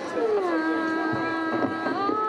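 A woman singing a Thai folk song through a microphone: her voice slides down onto a long held note, and a new, higher held note begins right at the end.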